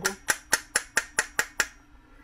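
About eight light, sharp metal taps, roughly five a second, stopping shortly before the end: a small metal tool tapping the float pivot pin into the body of a Baltmotors 250 motorcycle carburetor.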